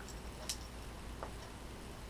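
Metal begleri beads clicking: one sharp, light click about half a second in and a fainter tick a little later, over a quiet room.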